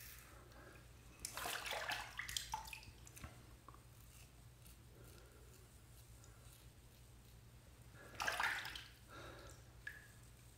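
Double-edge adjustable safety razor scraping through lather and remnant stubble on a light against-the-grain cleanup pass. A rasping stroke lasts over a second about a second in, and shorter strokes come near the end.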